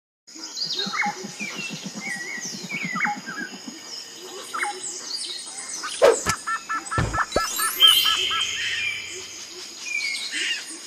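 Birds chirping in a forest ambience, laid under cartoon sound effects: a sharp hit about six seconds in, a low thud a second later, a quick run of about ten repeated short notes and a rising sweep.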